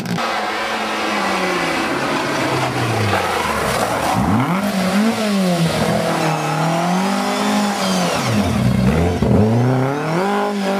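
Rally car engine revving hard, its pitch rising and falling repeatedly as it is driven through the gears, with two sharp drops and climbs in pitch about four and nine seconds in.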